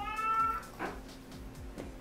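A single short high-pitched cry, like a cat's meow, lasting about half a second and rising slightly in pitch, over faint background music.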